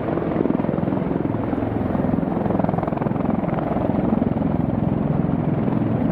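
RCAF CH-146 Griffon (Bell 412) search-and-rescue helicopter hovering close by: a steady, rapid chop of the rotor blades over the turbine engines.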